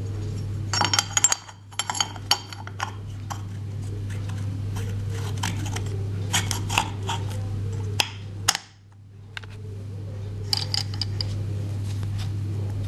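Clinks, taps and scrapes of a metal ring and other small metal pump parts being handled and fitted into the aluminium housing of a diesel injection pump, in clusters of sharp clicks. A steady low hum runs underneath.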